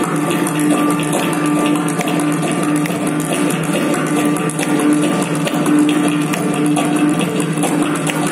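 Live Carnatic music: mridangam and ghatam playing a dense run of strokes, the mridangam's tuned ring sounding over and over about twice a second, with violin in the ensemble.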